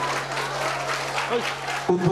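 Audience applauding with dense, steady clapping, with a low electrical hum underneath.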